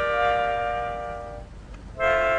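Melodica holding a long two-note chord that fades out about a second and a half in, with a new chord starting right at the end.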